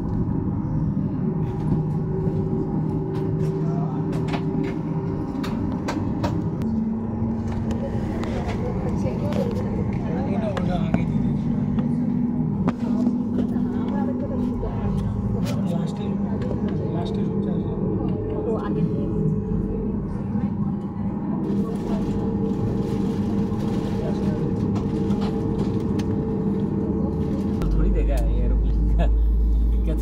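Airliner cabin noise on the ground: a steady hum from the aircraft's engines and systems, with low drones that shift in pitch now and then, and a strong low rumble near the end as the plane moves.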